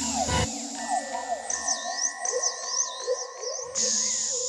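Electronic synthesizer music: held tones under many quick up-and-down pitch glides, like sonar pings. The bass drops out about half a second in, and a low drone comes back near the end.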